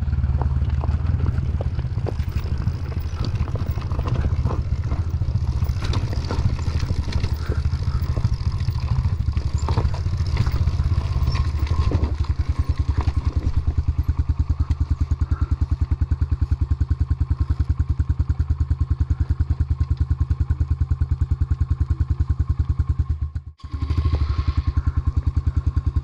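KTM 250 dirt bike engine running at low speed on a rocky trail, with rocks clattering and knocking under the tyres over the first half. From about halfway it settles into an even, slow putter as the bike creeps along, and the sound cuts out briefly near the end.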